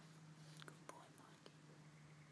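Near silence: a faint steady low hum with a few soft clicks scattered through it.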